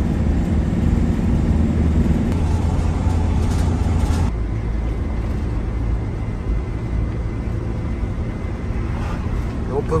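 Steady road and engine rumble inside a moving camper van's cabin. About four seconds in it drops abruptly to a lighter, slightly quieter rumble.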